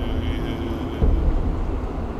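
Deep, low rumbling drone in an ambient meditation piece, with a faint steady hum above it; the rumble swells suddenly about a second in.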